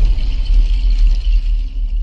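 Deep, loud rumble from an intro sound effect, with a thin high hiss above it. It is the tail of a cinematic boom, easing off a little near the end.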